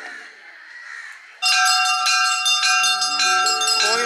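Bells start ringing suddenly about a second and a half in, loud and repeated, with many high ringing tones sustained over one another.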